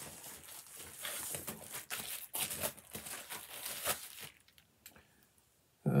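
Crinkly packaging wrap rustling and crackling in irregular bursts as a double-wrapped comic book is unwrapped and handled, stopping about four seconds in.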